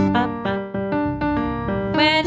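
Piano playing a quick run of single notes, about five a second, over a held low chord, as part of a recorded birthday song's backing track.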